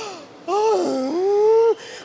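A man's long, theatrical wail of despair. Its pitch dips, then rises and holds before it breaks off, a lament over the losing Pakistan team.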